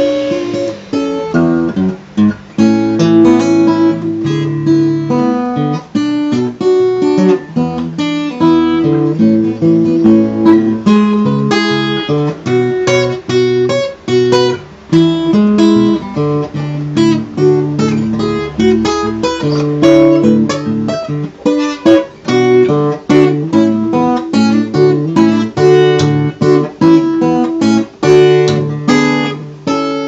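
Solo acoustic guitar played fingerstyle: an instrumental tune of quick picked notes, with low bass notes under a higher melody.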